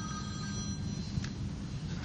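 A phone ringing: a steady electronic ring of several pitches at once, which breaks off a little under a second in, over a steady low hum.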